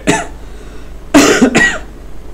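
A man coughs once, briefly, about a second in.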